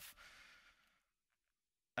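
A man's faint breath out, fading away over about a second, then dead silence.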